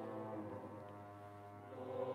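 Concert choir singing sustained chords over a low steady note. The sound grows softer through the middle and swells back up near the end.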